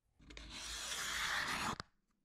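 Steel card scraper pushed along a glued-up walnut panel, knocking down the glue seam: one scraping stroke of about a second and a half that ends with a short click.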